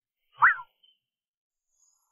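A single short cartoon-style 'boing' sound effect about half a second in, a quick glide up in pitch and back down.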